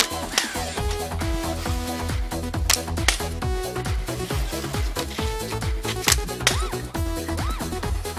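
Electronic dance music with a steady, driving beat.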